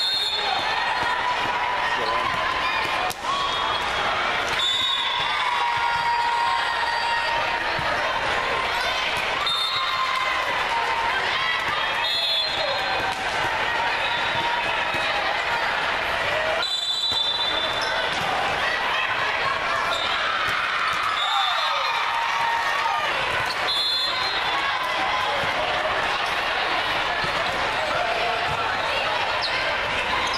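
The din of a busy indoor volleyball tournament hall: many voices and players' calls, with volleyballs being struck and bouncing on the courts. Short, high referee whistle blasts come now and then, about a third of the way in and twice more later.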